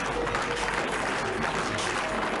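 Dense clatter of many tap shoes striking the stage together with audience clapping, over music.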